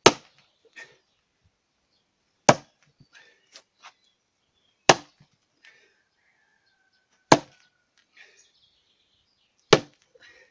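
Heavy splitting maul striking a large log seated in stacked tyres: five sharp blows about two and a half seconds apart, chopping at one side of the log to split off a slab. The log does not give way during these blows.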